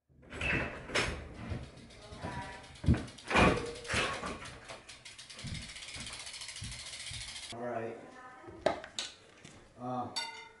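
An office door opening and a bicycle wheeled in over the threshold, with knocks and clatter as the bike and helmet are handled. A steady fast ticking runs for a couple of seconds midway.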